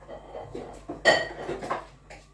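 Dishes and cutlery clattering, with one sharp ringing clink about a second in.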